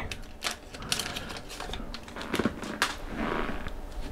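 Foil trading-card pack wrapper being torn and crinkled by hand, a run of scattered sharp crackles and clicks.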